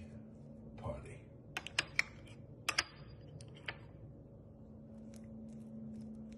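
Wooden spoon clicking against a small ceramic ramekin while scooping jelly: a quick run of sharp clicks in the middle, then a few fainter taps near the end, over a steady low hum.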